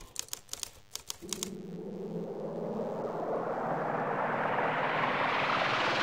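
Logo-intro sound effects: a quick run of typewriter-style clicks for about a second and a half, then a hissing swell that rises steadily in pitch and loudness.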